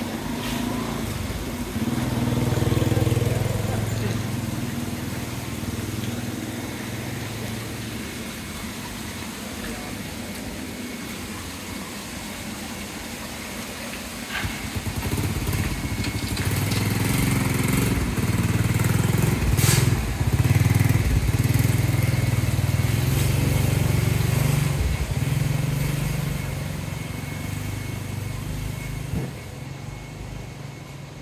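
Motor scooter engine going by close, loudest about three seconds in, then a longer spell of low engine hum from another motorbike in the second half.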